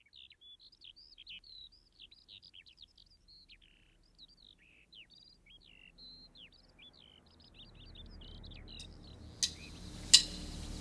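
Faint birds chirping, a busy run of short, high chirps and whistles. Near the end a low rumble builds and there is a sharp click.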